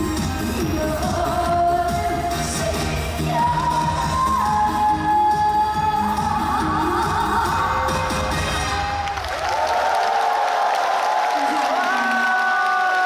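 A woman singing trot live through the hall's PA over a full backing track with heavy bass and drums. About nine seconds in, the bass and beat drop out, and the final long notes ring on over cheering from the crowd.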